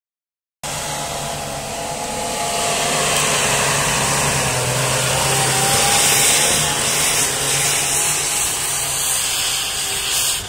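UAZ off-roader's engine running hard at high, steady revs under load as it climbs a steep slope, with a strong hiss over it. The sound starts abruptly about half a second in and grows louder over the next few seconds.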